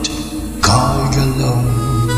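Karaoke playback of a German schlager ballad: a low male voice holds one long sung note over the accompaniment.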